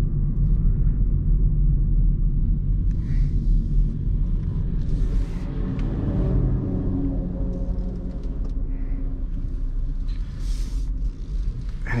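Interior of a Hyundai i30 Wagon on the move: a steady low rumble of road and engine noise heard from inside the cabin, with a faint engine hum in the middle of the stretch.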